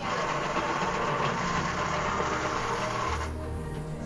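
Pencils scratching on paper in steady writing strokes, cutting off suddenly about three seconds in, with background music faintly underneath.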